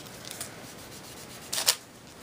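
Ink sponge rubbed over a glassine bag and scrap paper: faint scuffing, with one louder rub about a second and a half in.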